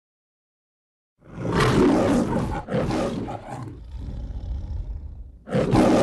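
The Metro-Goldwyn-Mayer logo's lion roar. After about a second of silence a lion roars loudly in two bursts, drops to a low growl, then roars loudly again near the end.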